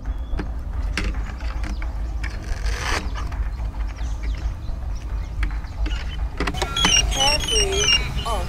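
Clicks and rustles of hands connecting the battery on a cyberQuad MAXI quadcopter, then, near the end, a run of short high electronic beeps at stepped pitches as the drone's electronics power up on the connected battery.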